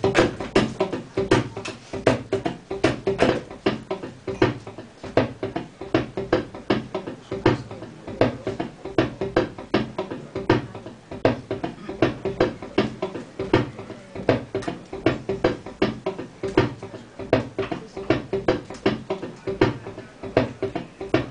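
Live free-improvised music: a rapid, irregular stream of clicks and pops with low pitched notes underneath. A vocalist is making percussive mouth sounds close into a microphone.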